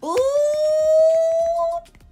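A woman's long, high-pitched 'ooh!' exclamation. It swoops up at the start, is held on one steady pitch for about a second and a half, then stops near the end.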